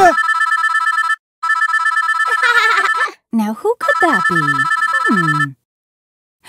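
Smartphone ringtone: an electronic two-tone trill ringing in three bursts with short gaps between them.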